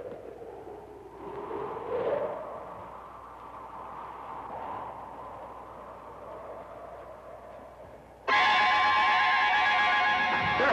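Horror film score: a soft, eerie, wavering sound that rises and falls, then about eight seconds in a sudden loud orchestral blast of sustained chords.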